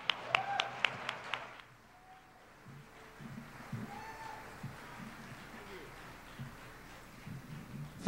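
Hand clapping close to a microphone, about eight sharp claps in the first second and a half, then only faint audience noise.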